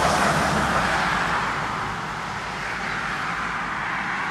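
A car passing on the road, its tyre and road noise loudest at first and fading as it moves away.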